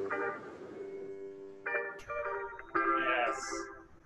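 Band music played over a video call: sustained chords struck one after another, the last ringing out and fading near the end, with a sharp click about two seconds in.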